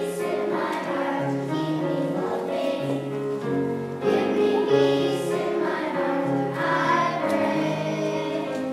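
A children's choir singing, one held note flowing into the next.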